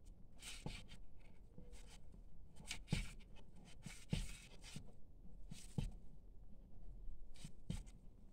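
Paper yarn rustling and scratching in short, irregular strokes as it is worked with a crochet hook and pulled through the stitches, with a few soft ticks along the way.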